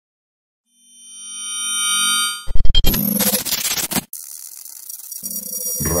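Radio station ID jingle: a synthesized chord swells up over about a second and a half, breaks into a burst of loud hits, then gives way to a hissing noise bed, with a voice announcing "Radio Zona X" right at the end.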